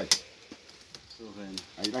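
Machete blade cutting through the wicker stems at the rim of a basket: two sharp snaps right at the start, then a few faint ticks. It is the finishing step, trimming off the leftover stake ends of the weave.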